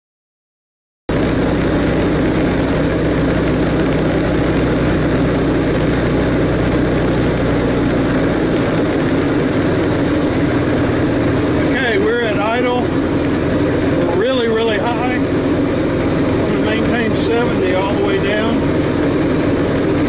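Thatcher CX5 light aircraft's engine and propeller running steadily, with airflow noise, heard inside the small cockpit; it cuts in abruptly about a second in, and its lowest drone drops away about a third of the way through.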